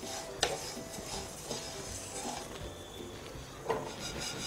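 A spatula stirring and scraping dry-roasted fennel seeds in a kadhai, faintly, with one sharp click about half a second in; the seeds are now done roasting.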